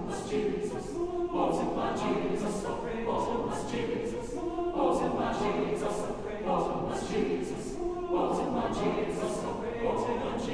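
Mixed chamber choir singing a spiritual a cappella in full harmony, in short rhythmic phrases that start about every second and a half, with crisp hissing consonants.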